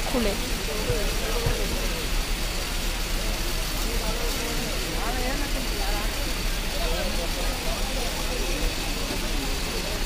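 Busy street-market ambience: a steady hum of traffic with indistinct voices of people talking in the background.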